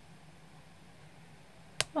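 Quiet room tone, then one sharp click near the end.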